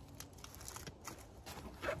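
Faint handling noise: small clicks and rustles of survival-kit items being handled and packed into a pouch.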